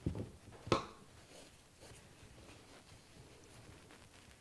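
Hands working a woven t-shirt-loop pot holder, pulling loop ends through the weave: two light knocks in the first second, then faint rustling of the fabric.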